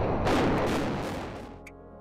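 Explosive demolition of a concrete tower block: the blast and collapse make a dense noise that fades away over about a second and a half.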